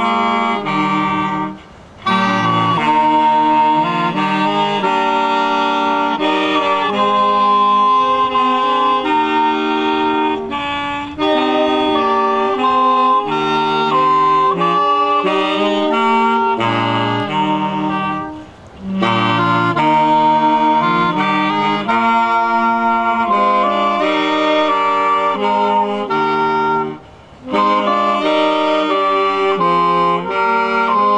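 Saxophone quartet playing a tune in four-part harmony, with a baritone saxophone on the bass line. The playing pauses briefly between phrases three times: about 2 seconds in, near the middle, and near the end.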